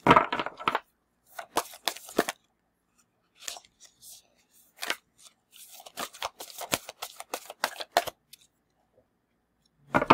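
A stiff, new deck of oracle cards being shuffled by hand: papery flicking and rattling in several bursts with short pauses between, stopping about eight seconds in.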